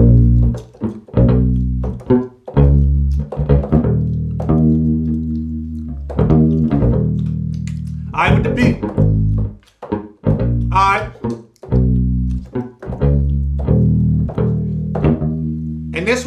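Rickenbacker electric bass sound played from a keyboard: a low plucked bassline of short notes and a few longer held ones.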